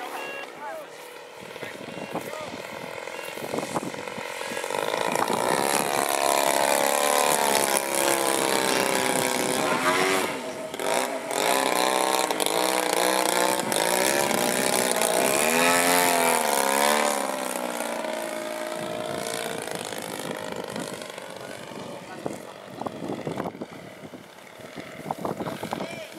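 Engine and propeller of a radio-controlled Extra 330 SC aerobatic model plane in flight, its pitch rising and falling continuously as it manoeuvres. It gets louder after a few seconds and stays loudest through the middle as it passes closest, then fades.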